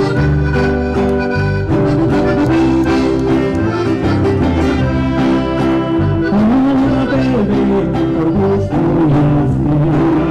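Live mariachi band playing an instrumental passage: sustained melody notes over a steady strummed beat.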